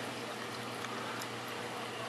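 Steady hiss of water and air bubbles from a newly installed Vertex protein skimmer running in a reef tank sump, with a low steady hum underneath. The skimmer is in its break-in period, its bubbles kept low so it does not overflow.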